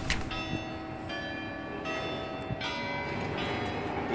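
Church bells ringing: about five strikes at different pitches, roughly one every three-quarters of a second, each ringing on as the next one sounds.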